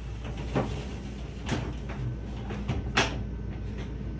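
Sliding glass shower door panels being slid along their track, a low rolling rumble with three light knocks as the panels meet or catch.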